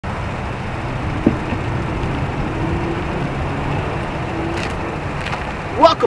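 Steady outdoor road-traffic noise, with a single click about a second in; a man's voice starts right at the end.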